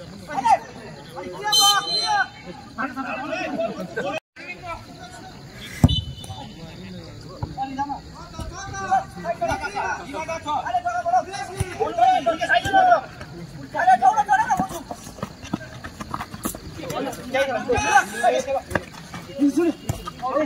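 Voices calling and shouting across an outdoor football pitch, with background chatter. A single sharp thud comes about six seconds in, and the sound cuts out briefly just after four seconds.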